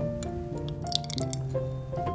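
Background music of held, changing notes, with a short wet dripping of syrup running through a funnel into a glass bottle about a second in.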